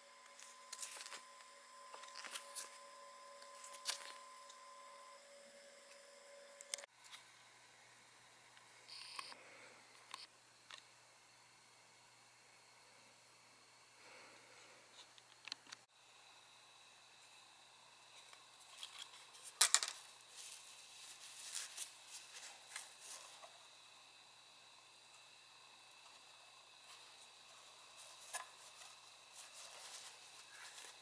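Faint handling noises from a drone's plastic parachute module and its fabric canopy: scattered clicks and rustling, with a cluster of sharper clicks about two-thirds of the way in.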